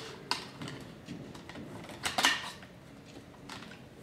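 Wire retaining clip and plastic fuel tank baffle clicking and rattling as they are handled, with a sharp click shortly after the start and a louder cluster of clicks about two seconds in.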